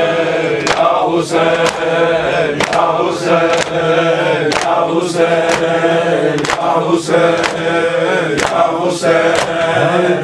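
A group of men chanting a Shia mourning lament for Husayn in unison, with rhythmic chest-beating (matam) strikes landing about twice a second.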